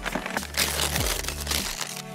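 Gift wrapping paper being torn and crumpled as a present is unwrapped, a rustling, tearing noise lasting about a second and a half.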